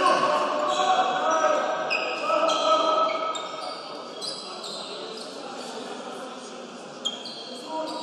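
Basketball game sound on a hardwood court: many short, high sneaker squeaks, a basketball being dribbled, and players' and spectators' voices. The voices are louder in the first three seconds, and there is a sharp knock about seven seconds in.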